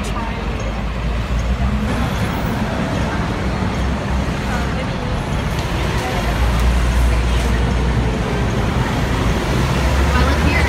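Busy city-street traffic: a steady noise of passing road vehicles with a deep engine rumble that swells from about six seconds in, as a heavy vehicle goes by.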